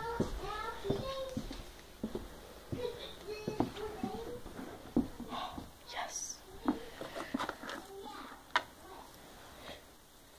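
A child's voice talking indistinctly, with scattered sharp clicks and knocks of small objects being handled.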